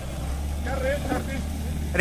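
Mahindra Thar's engine running steadily under load as the 4x4 churns slowly through soft sand, its tyres spinning and throwing up sand. A faint voice is heard in the middle.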